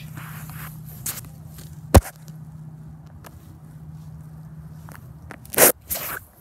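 A sharp crack about two seconds in, with a smaller click before it, over a steady low hum; near the end a loud short rush of noise.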